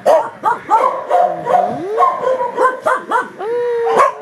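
Several kennel dogs barking and yelping over one another in quick, overlapping calls of different pitches, with one long held cry near the end.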